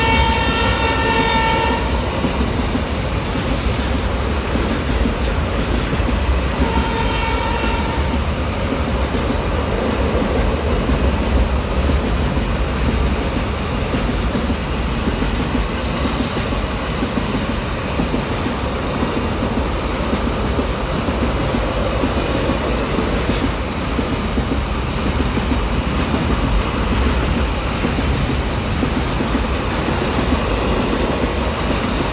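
Container freight wagons rolling past close by: a steady rumble and clatter of wheels over the rails, with scattered brief high-pitched wheel squeals. A train horn sounds for about two seconds at the start and again, more briefly, about seven seconds in.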